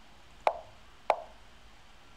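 Two Lichess piece-move sound effects, short wooden knocks with a brief ringing tail, about half a second apart: one for each move played in the bullet game.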